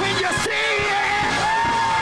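Slowed-down, chopped-and-screwed gospel praise-break music, with a voice yelling and singing long held notes over it.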